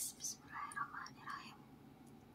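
A woman whispering a few soft syllables, which stop about a second and a half in.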